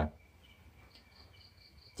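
A near-quiet pause with a faint steady high whine. In the second half comes a short run of quick, faint, high-pitched chirps, insect-like.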